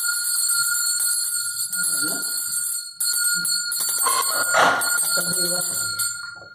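A puja hand bell rung continuously, its steady ringing running through the whole stretch, with people's voices joining in about two seconds in and again near the end.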